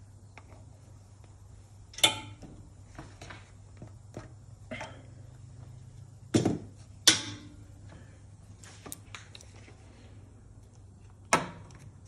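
Metal tooling on a Serdi 60 seat-and-guide machine clinking and clunking as the cutter is fitted in the spindle: a few separate sharp knocks, some with a brief metallic ring, over a steady low hum.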